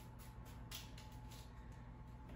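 Faint, soft scrapes and clicks of a wooden spatula pushing sauce-coated cauliflower pieces around a baking dish, a few separate strokes, over a low steady hum.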